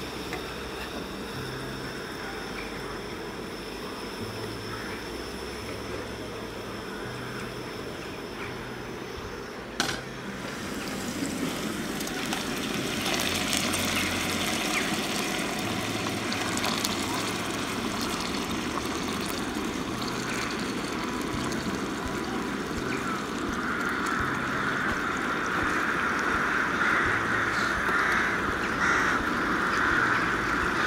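Oil sizzling in a frying pan on a camping-gas burner as sliced chilli fries. The sizzle grows louder and denser a little before the middle, when seafood goes into the pan, and it strengthens again near the end.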